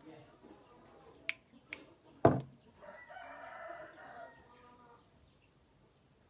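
A few sharp clicks, the loudest a little over two seconds in, as a small plastic cosmetic bottle is handled. They are followed by a drawn-out animal call lasting about a second and a half.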